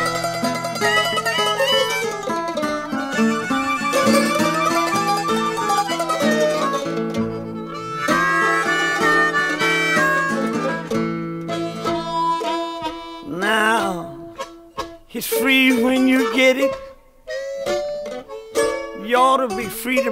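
Acoustic country blues band playing an instrumental break: harmonica over plucked guitar and mandolin. After about twelve seconds the steady low backing drops out, leaving sparser phrases that bend in pitch.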